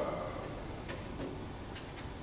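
A few light, irregularly spaced clicks, about three in two seconds, over steady room noise in a classroom.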